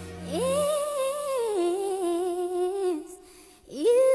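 Background music: a high, wordless humming voice holds a slow melody. One long wavering note steps down partway through and breaks off about three seconds in, and a new note swells in just before the end.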